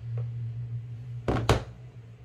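Two quick knocks about a quarter second apart, roughly one and a half seconds in: a PVS-14 night vision monocular being handled and set down in its hard plastic case.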